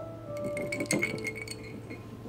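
Ice cubes clinking against a glass tumbler as a hand handles it, a quick cluster of clinks with a brief glassy ring, loudest about a second in. Soft background music plays underneath.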